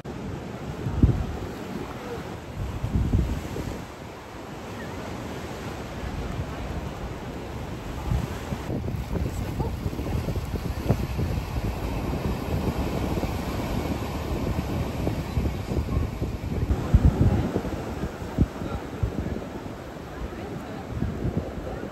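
Wind buffeting the microphone over a steady wash of ocean surf, with louder gusts about a second in, around three seconds and again near the end.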